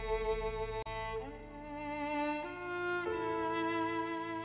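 Slow classical music: a bowed string instrument, most like a violin, plays a melody of long held notes joined by short slides, over a second sustained line.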